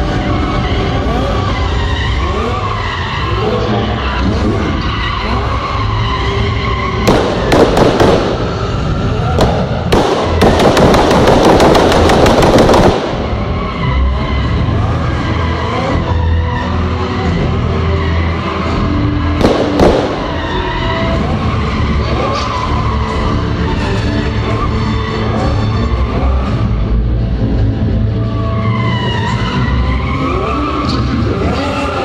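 Small hatchback car engines revving as the cars spin and skid on the arena floor, with tyre squeal, over music playing through the arena speakers. Louder bursts of noise come about seven seconds in, for a few seconds from about ten seconds in, and again around twenty seconds in.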